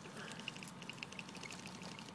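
Faint, rapid, irregular clicking and rattling of a circuit board, its frame and loose wires being shaken by hand.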